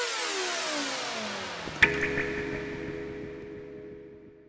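Electronic logo sting: several synthesizer tones sweep steadily downward, ending in a sharp hit a little under two seconds in, followed by a held low chord that fades away.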